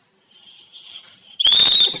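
A small handheld whistle blown: a faint breathy tone for about a second, then one loud, shrill, steady blast in the last half second.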